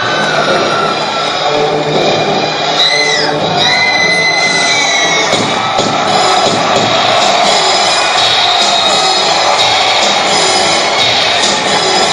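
Audience cheering and shouting over recorded playback music, with a few high drawn-out shouts around three to five seconds in.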